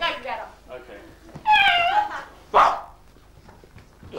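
Performers' voices imitating dogs: a short yelping cry at the start, a loud drawn-out whining howl about a second and a half in, then a single sharp bark.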